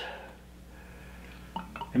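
Clear crème de cacao liqueur being poured from a glass bottle into a small measuring glass, a faint trickle.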